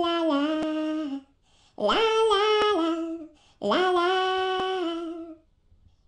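A woman's voice singing a wordless melody on open syllables, in three phrases that each settle onto a held note. The singing stops about half a second before the end.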